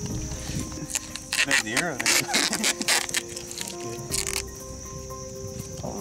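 A steady high chirring of night insects under sustained background music notes, broken by several short noisy bursts in the first four or so seconds and a brief voice.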